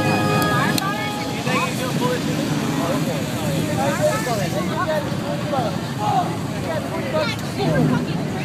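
Steady engine rumble from trucks in a mud pit, under a scatter of shouts and voices from a crowd of spectators. Music from a stereo cuts off about a second in.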